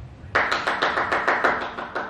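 Hand clapping: a quick run of sharp claps, about eight a second, starting suddenly about a third of a second in and easing off near the end.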